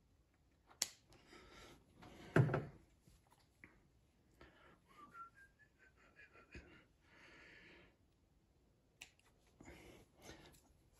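Quiet handling of scissors and a fleece piece at a sewing machine table: a sharp snip-like click about a second in, then a dull thump about two and a half seconds in. Near the middle come a few short whistled notes rising in pitch, followed by a soft rustle.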